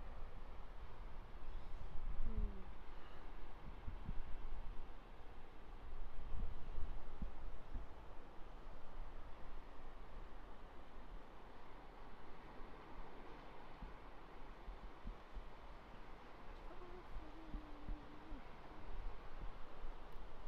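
Ocean surf washing onto a sandy beach: a steady rush that swells and eases over several seconds, over a low, irregular rumble.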